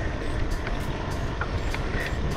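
Steady wind buffeting on the microphone and tyre rumble from an e-bike running fast over rough, cracked pavement, with a few short knocks as the bike goes over bumps.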